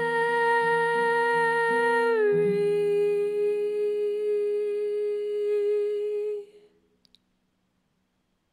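A woman's voice holding one long last note of the song, stepping down in pitch once about two seconds in, over acoustic guitar strumming that stops on a ringing final chord. Voice and guitar fade out together shortly before the end.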